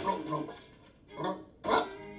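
Soundtrack of an animated test clip played over a room's speakers: short animal-like vocal sounds from cartoon food creatures. Two brief bursts, about a second in and near the end, the second louder.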